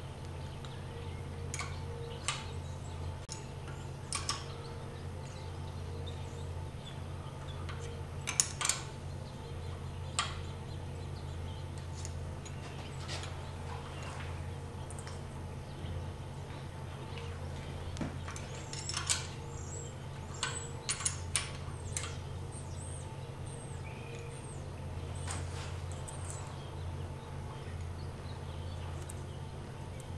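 Irregular light metal clicks and clinks of wrenches working the tappet adjusting screw and locknut of a Willys F-134 Hurricane engine's exhaust valve, with a feeler gauge in the lash gap, while the too-loose clearance is being closed up. Some clicks come in quick clusters, over a steady low hum.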